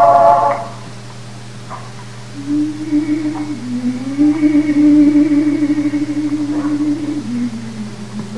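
A live cantorial concert recording: a male cantor's loud sung phrase ends about half a second in. After a short lull comes a low, held note with few overtones that slides up slightly, holds, and steps lower near the end. A steady low hum from the old recording runs underneath throughout.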